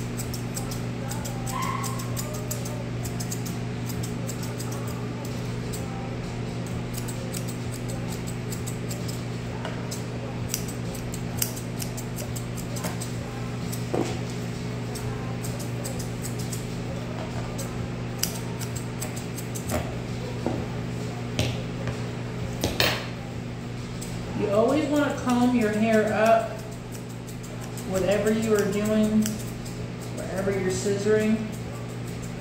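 Toothed dog-grooming shears snipping through leg hair in a scattered run of light metal clicks, over a steady low hum. A voice comes in twice near the end.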